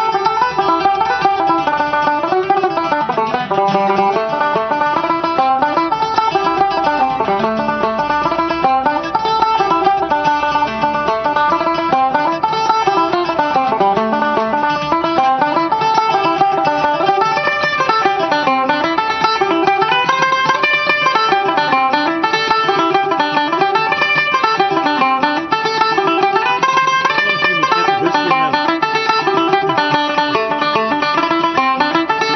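Tenor banjo and a long-necked mandolin-family instrument playing a brisk tune together, with a quick, continuous run of plucked notes.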